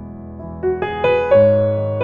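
Slow solo piano played on a Yamaha stage keyboard. A held chord fades, then a few notes are struck in quick succession about halfway through, leading into a fuller, louder chord that rings on.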